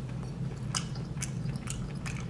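A person chewing rotisserie chicken close to the microphone: wet chewing, with a few short, sharp smacking clicks spaced unevenly.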